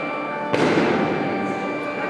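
Casio digital piano playing held notes, with a single loud bang about half a second in that rings off over about a second.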